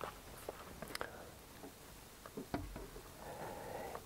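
Faint scattered clicks and taps of a laptop being operated, a few in the space of four seconds, over quiet room tone.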